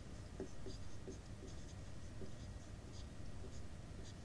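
Faint scratching and light ticks of handwriting, in short irregular strokes.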